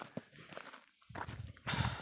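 Footsteps on dry grass and stony ground: a few short crunches, louder in the second half.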